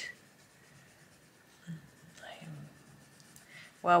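Faint scratching of a Faber-Castell Polychromos coloured pencil shading on paper, with a soft murmured voice a little over two seconds in and a spoken word at the very end.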